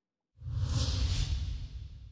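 A whoosh sound effect with a deep rumble beneath a bright hiss, starting about a third of a second in and slowly fading: the sting that brings on a news channel's animated logo outro.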